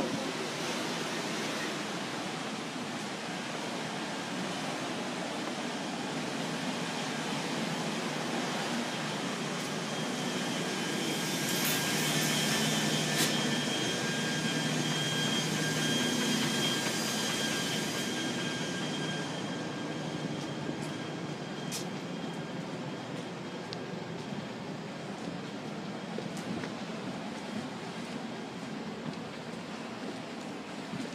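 Steady rushing of wind and water with a low machinery hum, heard from the open deck of the steamship Badger while it is underway. The hum, with a faint high whine over it, grows louder for several seconds midway, then eases off.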